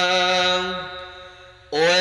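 A man's voice chanting Islamic dhikr into a handheld microphone. A long held note fades away around the middle, and a new phrase begins with a rising pitch shortly before the end.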